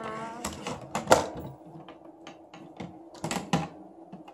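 Hard plastic parts of a Hasbro Fantastic Gymnastics toy knocking and clicking together as the frame is assembled: a string of short, sharp clicks at irregular intervals, the loudest about a second in. A brief vocal sound comes right at the start.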